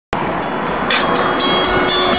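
Music played loud through a car's aftermarket audio system, starting suddenly just after the beginning, with sustained steady tones over a dense bed of sound.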